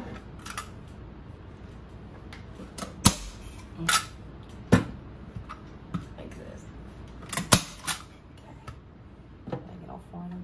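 Arrow PowerShot manual staple gun firing staples through fleece into an ottoman's wooden frame: a series of sharp snaps spaced a second or so apart, the loudest in the middle of the stretch, with softer clicks of the gun being handled between them.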